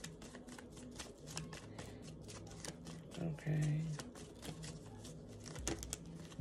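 A tarot deck being shuffled by hand: a quick, continuous run of light card clicks and flicks. A brief vocal sound breaks in a little past the middle.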